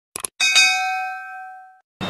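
Subscribe-button animation sound effect: two quick clicks, then a bell ding that rings and fades over about a second and a half.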